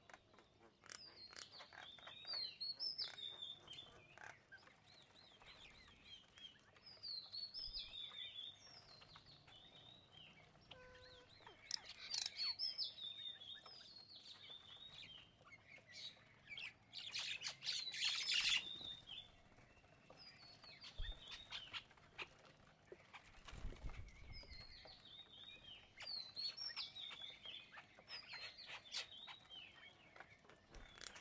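A feeding flock of chestnut-tailed starlings chattering, with repeated bursts of high chirping calls that are loudest a little past the middle. Under the calls run many short, sharp taps of beaks pecking at peanuts and seed on a wooden board.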